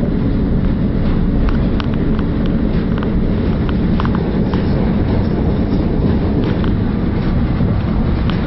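Inside a Class 333 electric multiple unit running at speed: a steady rumble of wheels on rails, with scattered light clicks over it.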